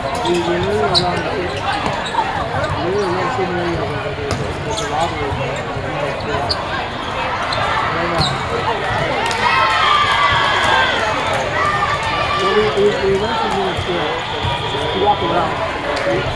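Indoor volleyball play in a large, echoing hall: many overlapping voices calling and chattering, with scattered sharp smacks of volleyballs being hit and bounced. Around the middle, higher raised voices stand out for a couple of seconds.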